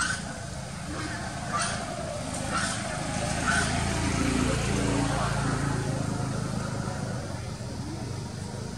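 Baby macaque giving short, high squeaks, about four in the first half, over a low steady rumble that grows louder in the middle.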